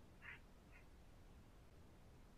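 Near silence, with two faint, brief chirps about a quarter and three quarters of a second in.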